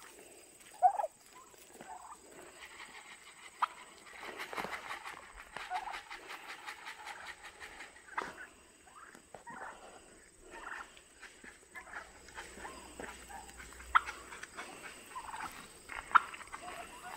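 A flock of white domestic turkeys calling in short, scattered calls as they walk along, the loudest about a second in and near the end. Footsteps crunch on a gravel track underneath.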